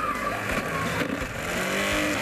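Small personal blender running steadily, its blades grinding a crumbly nut mixture in the cup.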